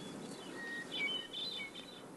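Small birds chirping: a few short, high chirps and whistles, most of them about a second in, over a steady low hiss of outdoor background noise.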